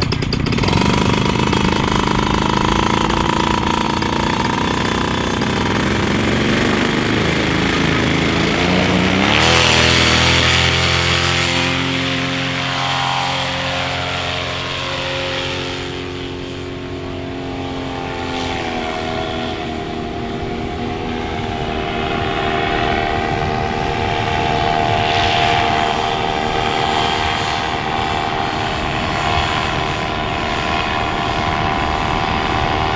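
Paramotor trike's engine and propeller revving up to full power about eight to ten seconds in for the takeoff run, then running steadily at high power as the aircraft climbs.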